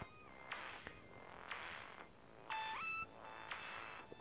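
Faint meowing of a domestic cat: a short call about two and a half seconds in that steps up in pitch, along with a couple of soft clicks.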